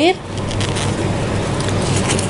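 A small owl-print fabric coin purse being handled and opened by hand, with soft rustling and small clicks over a steady background hum.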